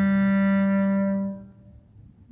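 Solo clarinet holding one long low note that tails off about a second and a half in, followed by a short silence.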